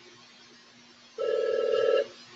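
An electronic telephone ring, a loud trilling tone starting a little over a second in and running about a second.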